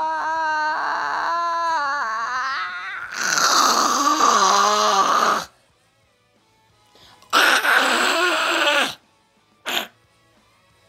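A person's voice holds a wavering sung note for about three seconds, then gives a loud, strained wail that falls in pitch. After a couple of seconds of quiet comes a second loud wail, and a short yelp near the end.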